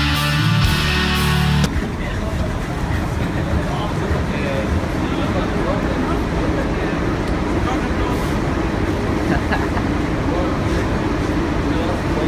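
Background music cuts off about two seconds in, giving way to busy bus-station ambience: a steady low rumble and indistinct chatter of people.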